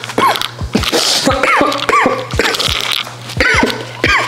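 A man coughing and sneezing in repeated fits, laid over an edited-in comic sound effect of short swooping tones that rise and fall over and over, with a steady low hum underneath.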